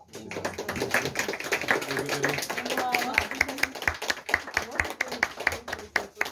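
A small group applauding, with people talking over the clapping; the claps thin out to a few separate ones toward the end.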